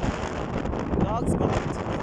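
Wind buffeting the phone's microphone on a ferry's open deck, over the steady low rumble of the ferry under way. Faint voices come and go in the background.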